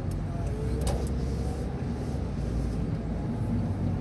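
Road and engine noise heard inside a moving car's cabin: a steady low rumble, with one brief knock about a second in.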